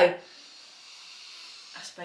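A person breathing in through the nose in one long, faint sniff of about a second and a half, smelling perfume on her wrist.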